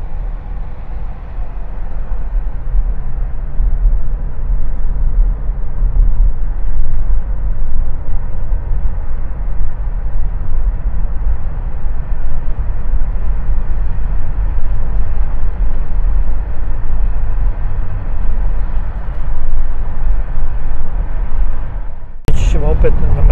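Car driving at a steady speed, heard from inside the cabin: a loud, constant low rumble of road and engine noise.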